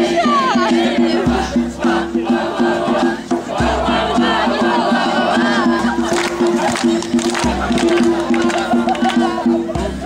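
A group of young people singing and shouting an action song together, with acoustic guitars strumming the accompaniment in a steady rhythm.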